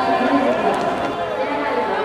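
Several voices shouting and calling over one another across a sports ground, some calls drawn out.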